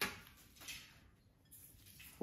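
A sharp light clink of tableware being handled, followed by a fainter tap about two-thirds of a second later.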